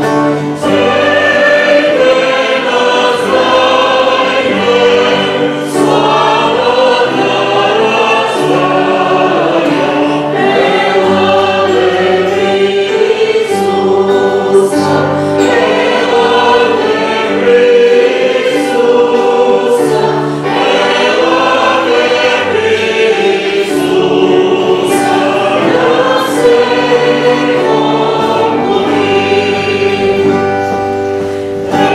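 A Christian worship song sung by many voices together, in the manner of a choir or congregation, led by a man and a woman on microphones, with acoustic guitar accompaniment. The music runs continuously at a steady, full level.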